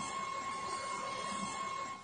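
Street noise from a phone recording, with a steady high-pitched whine running through it; both cut off at the end.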